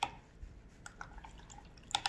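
Watercolour paintbrush being rinsed in a plastic water bucket: small drips and splashes of water, with a sharp tick at the start and another near the end.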